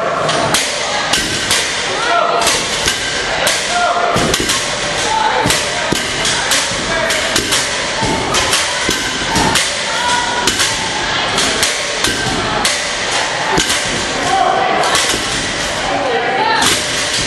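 Repeated irregular thuds of loaded barbells with rubber bumper plates being set down on a gym floor as several lifters do deadlift reps at once. Voices shout over them.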